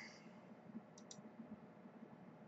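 Two faint, quick computer mouse clicks close together about a second in, over near silence.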